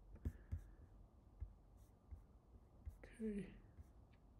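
Quiet room tone with a low hum and a few faint, scattered clicks; a man says "okay" near the end.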